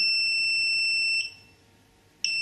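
AntiLaser AL Priority laser jammer's electronic beeper holding one steady high beep that stops about a second in. It is the long tone that follows the 'one, two, three, enter' button sequence on the control set, which enters the unit's menu.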